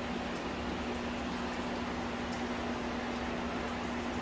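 Steady room background: a constant low hum with an even hiss from running equipment.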